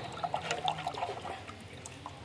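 Hot dye solution sloshing in a pot as it is stirred by hand with a stick and ladle to dissolve the dye powder in the water: a run of small irregular splashes, busier in the first second.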